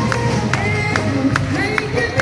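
Live band music with drums keeping a steady beat, about two to three hits a second. A boy's singing voice over it, amplified through the stage sound system, comes in about halfway through.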